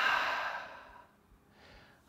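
A man's long, deliberate exhale through the mouth, a breathy sigh that fades out over about a second, taken as a cued slow breath out in a guided breathing pause. A short, faint breath follows near the end.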